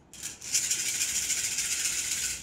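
A handful of cowrie shells shaken together in cupped hands for a divination cast, a steady dry rattle that starts about half a second in.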